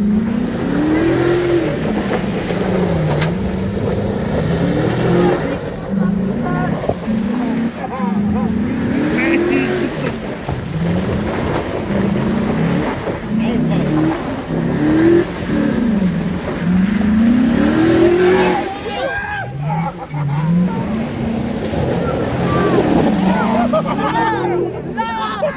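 Pickup truck engine revving up and falling back again and again, a rise every second or two, as the truck spins and slides on loose dirt.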